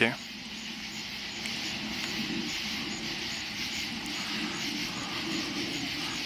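Night-time outdoor ambience: a steady high hiss of insects with faint regular chirps, over a low steady rumble.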